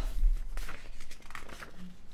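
Paper rustling and crinkling as the pages of a book are handled, in soft irregular scratches.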